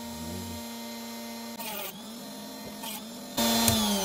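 Dremel rotary tool with a small diamond cutting disc running with a steady hum. About one and a half seconds in the hum breaks up, with two short gritty bursts in the middle. It turns much louder near the end.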